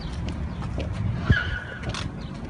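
Street traffic noise and low wind rumble. A single knock comes about a second and a quarter in, and a brief, steady high-pitched squeal follows for under a second near the end.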